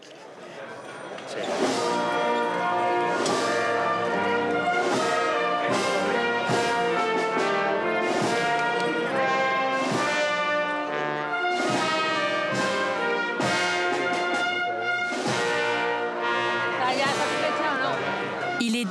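Brass band playing sustained, chord-like phrases, fading in over the first two seconds and then holding at full level.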